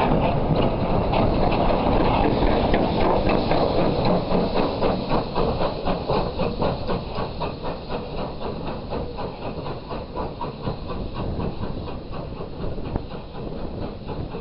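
Caledonian Railway 0-6-0 steam locomotive No. 828 moving off and drawing away, its exhaust beats and wheels on the rails going at a regular rhythm. It is loud close by and fades steadily as the engine recedes.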